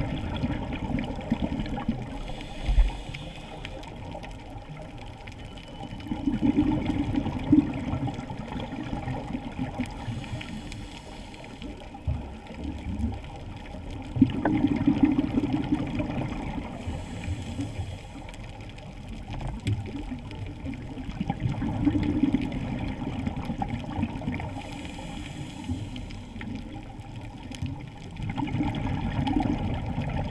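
Scuba diver breathing through a regulator, heard underwater: a short high hiss on each inhale followed by a longer, louder rush of exhaled bubbles, in a slow cycle of about one breath every seven to eight seconds, four breaths in all.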